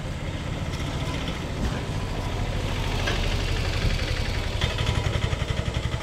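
An engine idling steadily, a low, evenly pulsing rumble.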